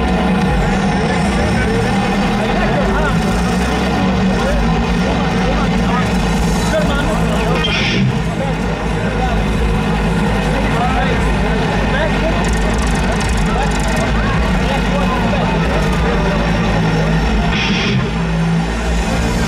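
Festival crowd chattering in front of an outdoor stage over a steady low hum from the stage sound system.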